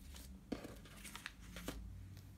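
Quiet, short rustles and crinkles of paper banknotes being handled and picked up, a few times over the two seconds.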